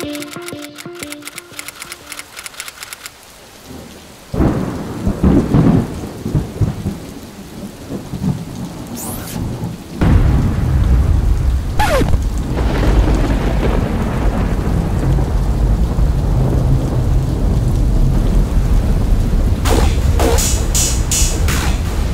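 Electronic music ends in the first few seconds, then a noisy low rumble with a rain-like hiss builds, becoming loud and steady from about ten seconds in.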